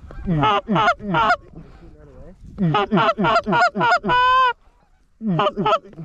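Goose honks: a few short honks, then a rapid run of them, one longer steady honk about four seconds in, and two more short honks near the end.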